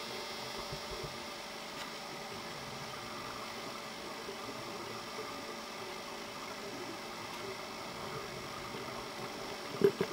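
Steady low hiss with a faint mechanical hum from a video camera recording inside an underwater housing, with no distinct sounds from the fish. A single short knock near the end.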